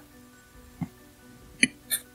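Soft background music with a few short suction sounds from an AquaGlo hydrodermabrasion handpiece working on skin, about a second in and again near the end.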